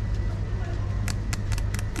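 Supermarket background: a steady low rumble with a faint high whine, and a quick run of sharp ticks about a second in.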